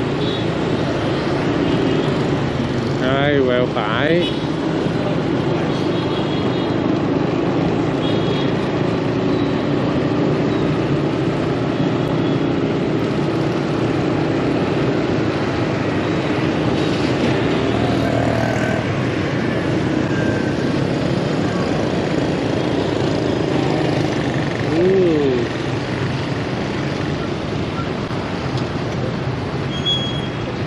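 City street traffic heard from a moving motorbike: steady engine and road noise with scooters and cars passing. Brief wavering pitched sounds come about three seconds in, and a short pitch sweep near the end.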